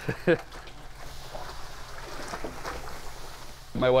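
Malted grain pouring from a sack into a brewery mash tun of wet mash, a steady soft hiss with small irregular flecks, while a wooden paddle stirs it in.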